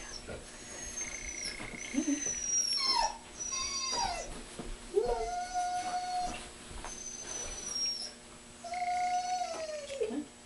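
A dog whining in a series of high, drawn-out whines, several of them sliding down in pitch.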